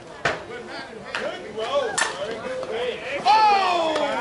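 Slowpitch softball struck by a bat: a sharp, ringing ping about two seconds in, after a couple of sharper knocks. Near the end comes a long, loud shout that falls in pitch.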